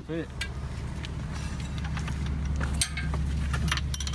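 A few light metallic clicks and clinks as an adjustable wrench is fitted to a boat hull's drain plug, over a steady low hum.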